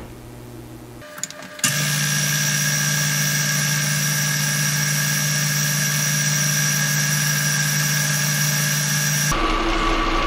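Small metal lathe running while turning down a part, the sound played back sped up with the picture so its motor hum comes out as a steady, high-pitched whine. It starts abruptly about a second and a half in and switches back to a lower running hum near the end.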